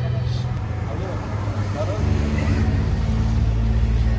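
Street ambience of road traffic and indistinct voices, under background music with sustained low notes that shift about two seconds in.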